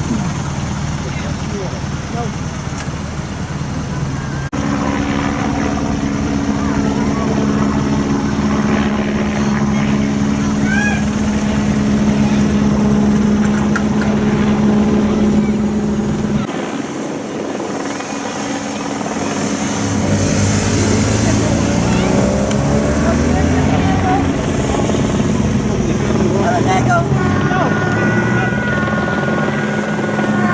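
Motor engines running with a steady drone, broken by two sudden cuts, and an engine note that rises a little past the middle as a vehicle accelerates.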